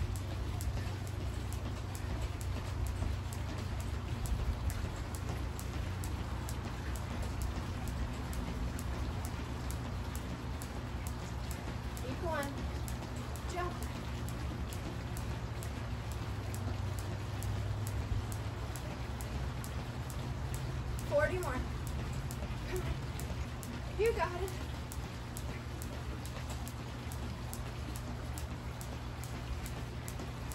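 Jump rope skipping on a concrete patio: a steady, even run of quick ticks as the rope strikes the ground and shoes land, over a low steady hum. A few brief voice-like sounds come in around the middle.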